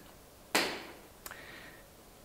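A sharp click about half a second in that fades quickly, then a fainter tick a little after one second, over the hall's quiet background.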